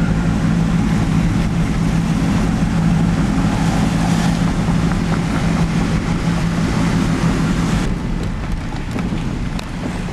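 Car cabin noise while driving on a wet road: a steady low hum from the car with the hiss of tyres on wet pavement. The hiss drops off about eight seconds in.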